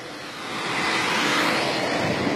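A motor vehicle running close by, its noise swelling over about the first second and then holding steady.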